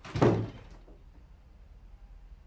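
A wooden interior door shut hard once: a single loud thud about a quarter of a second in, dying away quickly.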